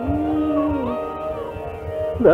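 Hindustani classical music in Raag Bihagada. A held melodic note glides down a little under a second in, over a steady drone. A higher accompanying line briefly enters and falls away.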